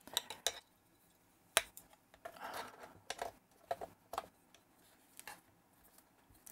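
Light clicks and rustles of small plastic parts being handled: a small wire connector pushed into its connector block and the side grip panel of an FrSky Tandem X20 Pro transmitter fitted back onto the case. One sharp click about a second and a half in stands out, with a brief rustle soon after and a few lighter clicks later.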